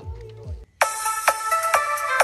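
Music played through karaoke loudspeakers. The previous track's low end cuts off about half a second in, and after a brief silence an electronic dance track starts with a steady, punchy beat, about two beats a second.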